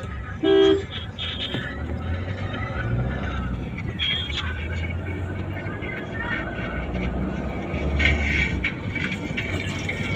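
One short vehicle horn honk about half a second in, the loudest sound, followed by steady road and engine noise inside the cabin of a moving Suzuki car.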